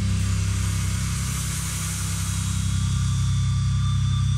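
Live metal band on stage: loud distorted electric guitars and bass held in a steady, droning passage, with a continuous high wash over it and no separate drum hits standing out.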